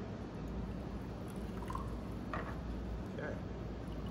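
Club soda being poured from a plastic bottle into a glass tumbler, a quiet running, fizzing pour.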